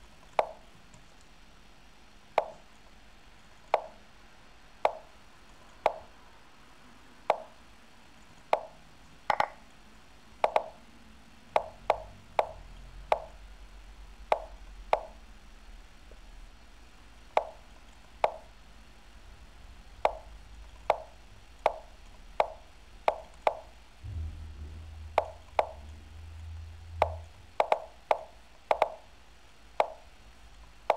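Lichess move sound effects from a fast bullet game: short wooden tapping sounds, one per move, about thirty in irregular succession, coming in quicker runs in places as both sides move in time trouble.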